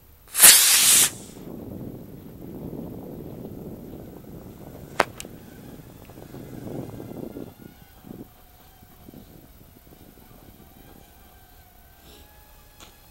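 Estes model rocket motor igniting with a loud whoosh lasting under a second, followed by a low rushing noise and a single sharp pop about five seconds in, typical of the motor's ejection charge firing. From about eight seconds, the faint steady whine of the rocket's small electric propeller motors as it descends under power.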